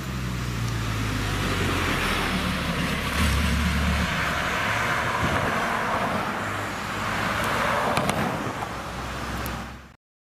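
Road traffic on a two-lane highway: a low engine hum in the first few seconds, then an SUV passing close by, its tyre and engine noise swelling through the middle and fading. The sound fades out just before the end.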